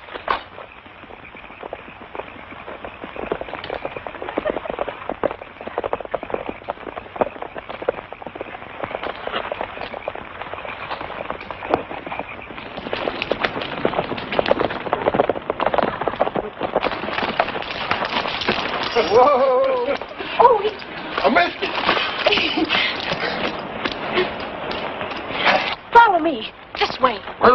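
Horses' hooves clattering over rough ground as riders travel, a dense irregular patter that grows louder about halfway through.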